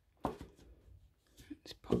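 Light handling noises from a small plastic dropper bottle of silicone oil being moved and set down on a tabletop: one sharper knock about a quarter second in, then a few soft clicks. A spoken word near the end.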